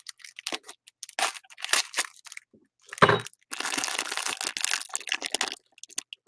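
Foil wrapper of a blind-box mystery mini toy being torn open and crinkled by hand, in short crackles. There is a sharper crack about three seconds in, then denser continuous crinkling until near the end.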